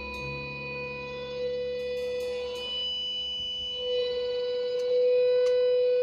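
Small rock band's quiet, sustained passage: electric guitar and keyboard notes held and ringing, with a low bass note that fades out about three seconds in, and a few light string clicks.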